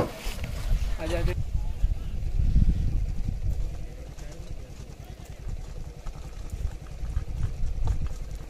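Low, gusting wind rumble on the microphone as a loaded bullock cart approaches along a dirt track, with faint scattered clicks over it. A man's short call comes in the first second.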